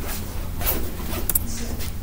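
A few short rasping and clicking noises over a steady low hum.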